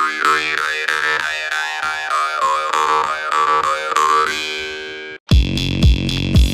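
Steel jaw harp (Tesla varga) with a magnet fitted to lower and thicken its tone, played as a steady twanging drone. Its overtones sweep up and down rhythmically, about three times a second, and it fades out about four to five seconds in. Near the end, electronic dance music with heavy bass beats cuts in.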